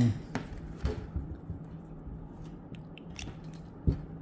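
Small plastic clicks and scrapes as the mouthpiece of a Spec vaporizer is handled and pulled off its body: two sharper clicks in the first second, then a few faint ticks. A steady low hum runs underneath.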